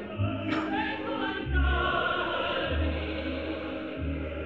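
Opera music from a live stage performance: chorus and solo voices singing with orchestra, over deep bass notes that recur about every second and a quarter.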